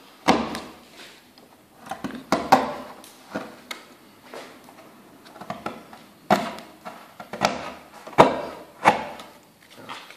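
Hand-pushed carving chisel cutting into soft wood pulp ornament: a series of irregular sharp cutting clicks and knocks, the loudest about eight seconds in.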